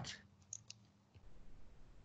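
Near silence with room tone, broken by two faint short clicks about half a second in.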